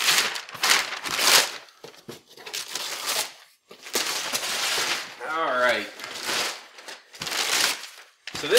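Christmas wrapping paper being ripped and crumpled off a large cardboard box, in a series of loud, noisy rips and rustles. A brief voice is heard about five seconds in.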